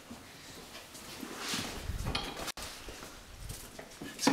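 Handling noise: rustling and light knocks as objects are moved about on a workbench, with a momentary dropout about halfway through.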